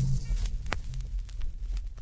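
The Angolan rumba song's last bass note dies away in the first half second, leaving the low rumble and hum of a vinyl record's surface noise. Scattered clicks and crackle sit on top, the sharpest just under a second in.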